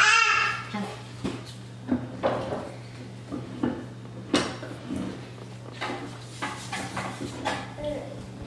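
Small hand-cranked tabletop etching press being turned, the steel rollers and crank giving a series of irregular short clicks and knocks as the felt blanket and plate pass through, over a steady low hum.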